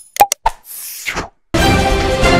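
A few quick pop and click sound effects and a short whoosh, then upbeat theme music cutting in abruptly about one and a half seconds in.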